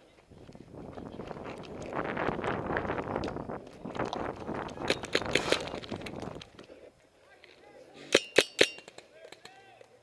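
A paintball player running across a dirt field: a rushing, rustling jumble of steps and jostled gear for about six seconds. About two seconds after it dies away come four quick, sharp paintball-marker shots close by, followed by faint distant shouting.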